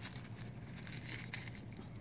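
Faint, irregular rustling and rubbing of a paper towel wiping excess epoxy off a steel tool shank.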